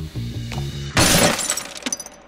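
Background music, then about a second in, a loud crash of glass shattering, with tinkling pieces ringing on for about half a second as the music stops.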